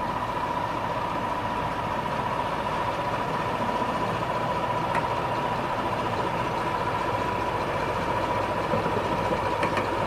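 BR Class 14 diesel-hydraulic shunter's Paxman Ventura diesel engine running steadily as the locomotive hauls a coach along the track, with a steady high-pitched whine over the engine note.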